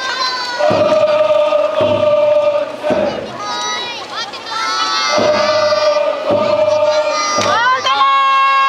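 Kokkodesho float bearers chanting in unison, a steady rhythm of long held shouts about a second each, each call set off by a beat of the float's taiko drum.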